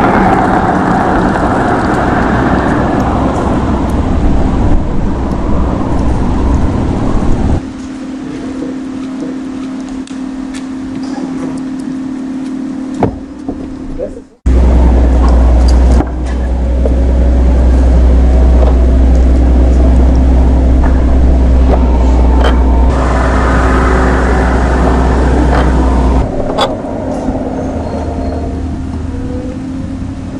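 A Maybach limousine driving away, then a steady low hum. After a sudden cut about halfway in, a loud deep rumble lasts some ten seconds, then fades back to a lower hum.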